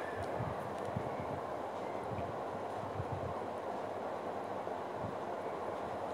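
Steady background rushing noise with a few faint low knocks, no voice.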